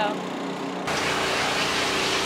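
Steady rushing hiss of grooming equipment working over a Hereford steer's wet coat in a wash rack. It starts abruptly about a second in.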